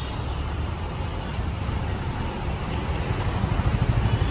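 Road traffic: a steady low engine rumble from passing motor vehicles, growing a little louder toward the end.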